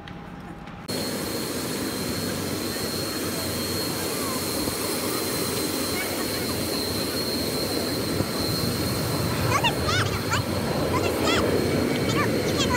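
Jet airliner engines running on an airport apron: a steady loud roar with a thin, high, steady whine, starting abruptly about a second in.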